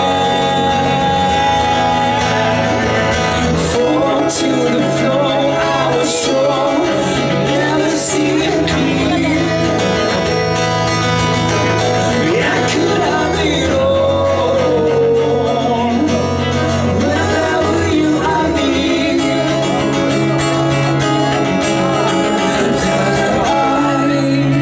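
Live band playing a rock song: a man sings into a microphone over guitar and bass.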